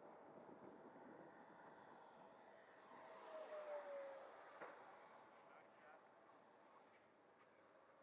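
Faint whine of a Freewing F-15's 90 mm electric ducted fan, an FMS metal fan unit, as the RC jet flies overhead. Its pitch drops over about a second as it passes, loudest just before the middle.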